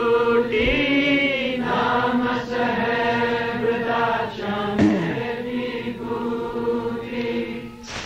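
Voices singing a Punjabi devotional bhajan (a sant-mat hymn) in unison, holding long sustained notes in a chant-like refrain; the singing tails off just before the end.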